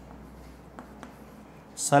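Chalk writing on a chalkboard: a few faint taps and scrapes over a low hum. A man's voice starts near the end.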